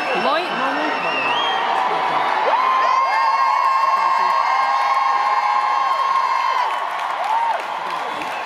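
Arena crowd screaming and cheering. A close-by voice holds one long high scream from about three seconds in until near seven seconds.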